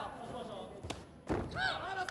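A heavy thump of an impact in a taekwondo bout, a little past halfway, with a sharp click just before it. Raised, shouting voices come just before and just after the thump.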